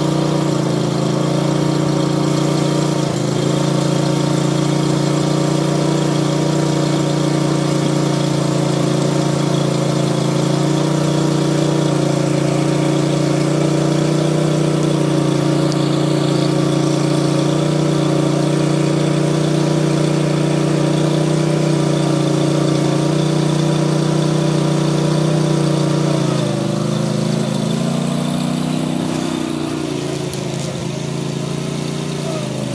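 Commercial lawn mower engine running steadily at speed. Near the end its pitch sags, then climbs back up.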